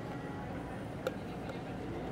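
Steady low background noise of a convenience-store interior, with one light click about a second in.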